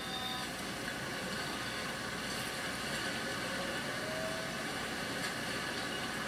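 Steady rushing noise of tsunami floodwater and debris surging between houses, heard through a television's speaker.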